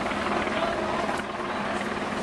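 Crowd voices in a street, over a steady low rumbling din.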